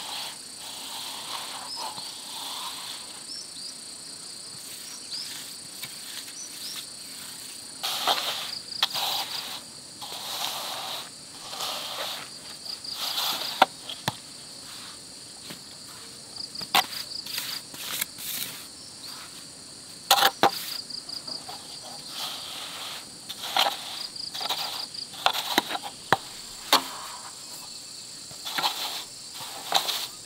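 A long straightedge scraping over wet concrete in repeated rasping sweeps, with a few sharp knocks. Behind it runs a steady insect chorus with short pulsing trills.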